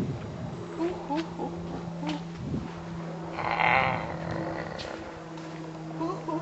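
A baby's vocal sounds, small coos at first and a louder raspy squeal about three and a half seconds in, over a steady low electrical hum.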